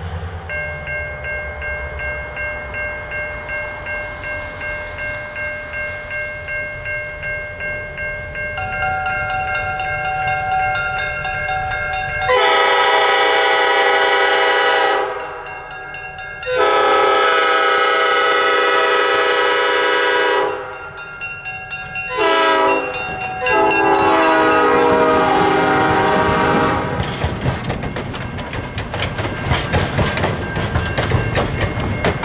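An approaching GP7 diesel locomotive sounds its multi-note air horn in four blasts, long, long, short, long: the standard grade-crossing signal. Before the horn there is a steady pulsing tone as the train draws near, and near the end the passenger cars roll past with wheel clatter.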